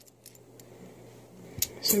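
Half-dollar coins clicking against one another as they are slid one by one off a stack held in the fingers: a few faint clicks, then two sharper metallic clicks near the end.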